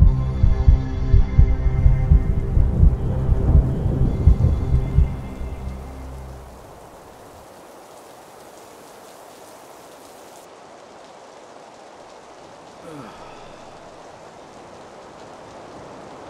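Deep thunder rumbling with irregular booms over a low, dark music drone, fading out about five to six seconds in. Then steady rain falls as an even, quiet hiss.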